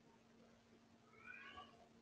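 Near silence: faint room tone with a steady low hum, and one short, faint pitched call a little past halfway through.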